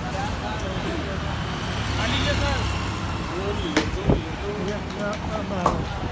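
Busy roadside street: voices chattering and traffic running past, with a low vehicle rumble about two seconds in and a couple of sharp clicks in the second half.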